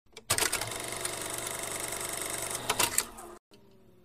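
A steady, rapid mechanical clatter starts with a click, runs about three seconds with a few louder knocks near the end, and cuts off suddenly. A faint falling tone follows.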